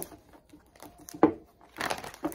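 Tarot cards being handled: light papery rustling with a single sharp tap a little over a second in.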